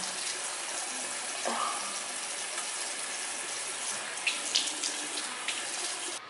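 Bathroom tap running steadily into a sink while water is scooped and splashed onto the face to rinse off soap, with a few louder splashes near the end.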